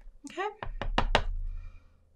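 Hands tapping and pressing paper pieces down on a craft work surface: a quick run of about five knocks about half a second in, over a low handling rumble.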